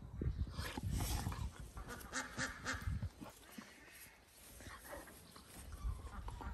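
Two puppies, a Dalmatian and a pointer-type pup, play-fighting: scuffling, grunting play noises in short irregular bursts, with a higher-pitched vocal sound held for about a second, two seconds in.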